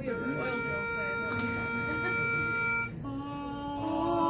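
Pitch pipe sounding one steady reedy note for about three seconds, giving a barbershop quartet its starting pitch. It cuts off, and the quartet's voices come in on held notes, more joining near the end to build the opening chord.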